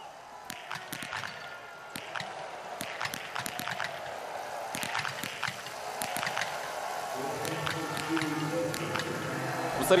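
Biathlon .22 small-bore rifles firing at irregular intervals from several athletes shooting prone at once, each shot a short sharp crack, over crowd and stadium background noise.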